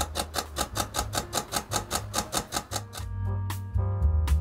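Olympus OM-D E-M1 Mark II mechanical shutter firing in a continuous high-speed burst: a rapid, even train of clicks, shot past the point where its Raw+JPG buffer has filled. The clicks stop about three seconds in and background music takes over.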